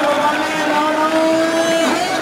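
A man's voice holding one long, drawn-out note that rises slightly and breaks off just before the end, in the manner of a kabaddi commentator's call, over crowd noise.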